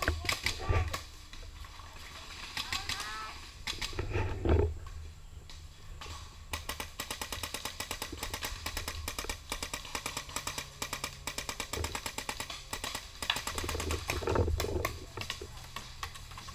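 Paintball markers firing in rapid strings, a fast run of sharp pops that starts about six seconds in and carries on to the end. Before that there are a few low thumps.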